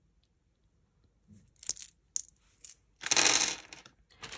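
Small crystal-point beads clicking together as they are tipped out of the hand, a few light clicks, then a louder rustling clatter about three seconds in.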